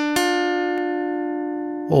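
Short music sting: a plucked-string chord, struck just after a quick rising run of notes, rings out and slowly fades.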